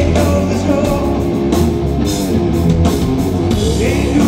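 Stoner rock band playing live: heavy distorted electric guitar and bass guitar over drums, with repeated cymbal hits.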